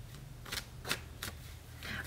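A tarot deck being shuffled by hand: a handful of short, crisp card clicks and snaps, spaced irregularly.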